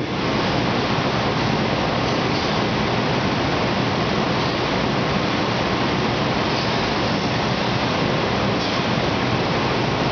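Steady, even rushing noise with no distinct events, holding at one level.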